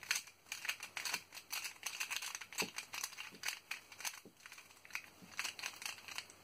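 X-Man Volt Square-1 puzzle being turned and sliced by hand, a rapid, uneven run of small plastic clicks and clacks.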